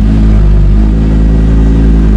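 Lamborghini Gallardo Super Trofeo race car's V10 engine running, heard loud from inside the stripped race-car cabin. It is a steady drone with a slight shift in pitch about half a second in.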